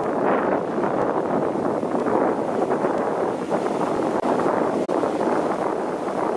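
Rough sea surf breaking on rocks, with wind buffeting the microphone: a steady rushing noise, broken by two brief dropouts late on.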